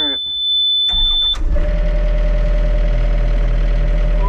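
A steady high warning beep from the Yanmar VIO50-6 mini excavator's dash as the key is turned on, cut off about a second and a half in as the diesel engine is started cold and settles into a steady idle.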